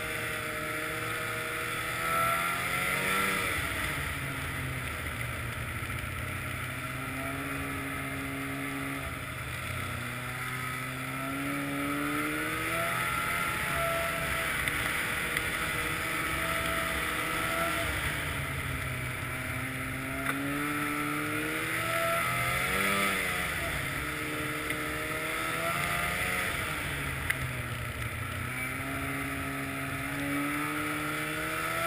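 Snowmobile engine running while riding, its pitch repeatedly rising and falling with the throttle, over a steady hiss.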